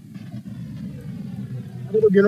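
Car engine and road noise heard from inside a moving car, a steady low rumble with the engine note drifting slightly lower.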